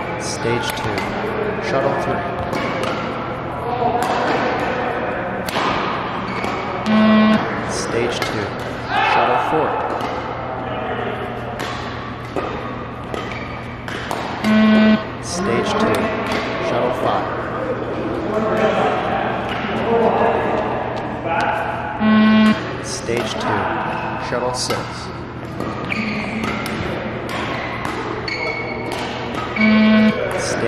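Beep-test (20 m shuttle run) recording sounding its loud electronic beep four times, about every seven and a half seconds, each beep marking the end of a shuttle. Between the beeps come thuds of running feet on the court floor, under steady background music or voices.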